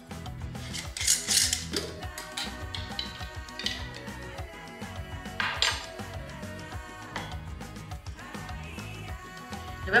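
Background music over kitchen handling sounds: a glass mason jar's metal screw lid being twisted off and set down, then thick chia pudding emptied from the jar into a stemmed glass, with a few light clinks and scrapes of glass.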